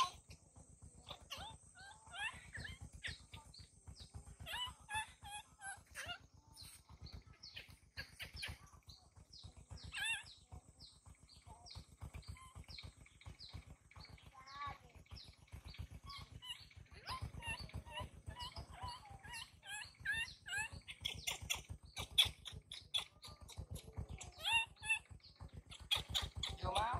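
Baby macaque giving many short, high-pitched squeaks and whimpering cries in scattered runs.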